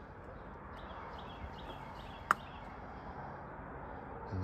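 Footsteps on a gravel and dirt lot over quiet outdoor background noise, with one sharp click a little past halfway.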